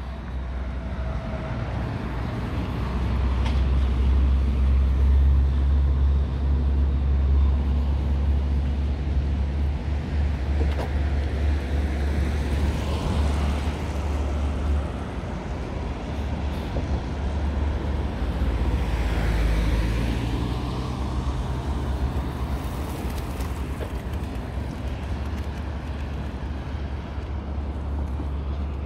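Road traffic on a wet bridge carriageway: cars going by one after another with tyre hiss on the wet asphalt, swelling and fading as each passes, over a steady low rumble.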